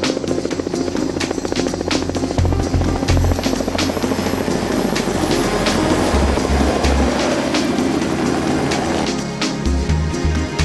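Radio-controlled scale model helicopter flying past, its engine and rotor buzzing with a rapid chop that fades out near the end, heard over background music with a steady beat.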